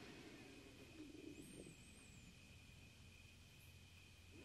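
Near silence: faint room tone with a faint steady high tone and a brief faint chirping glide about a second in.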